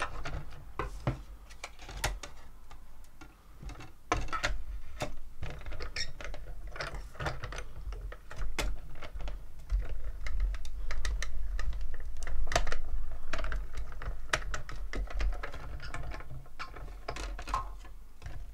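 Hand-cranked die-cutting machine rolling a plate sandwich with a steel die and cardstock through its rollers: a steady low rumble from about four seconds in until near the end, with clicks and knocks of the plates and crank throughout.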